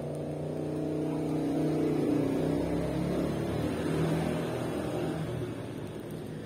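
Steady low hum of a small motor or fan running, its pitch wavering slightly and swelling a little in the middle before easing off near the end.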